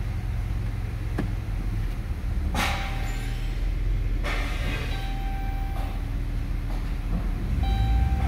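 Dodge Grand Caravan's 3.6-litre V6 idling, heard from inside the cabin as a steady low hum. There is a click about a second in, two short rushes of noise, and a short electronic chime from the van sounding three times while it is in reverse.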